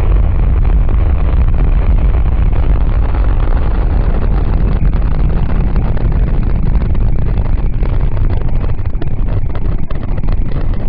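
Russian rocket's engines at liftoff: a loud, deep, steady rumble that turns more crackly in the second half as the rocket climbs off the pad.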